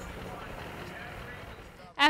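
Steady background noise with faint distant voices in it, dropping away just before the end.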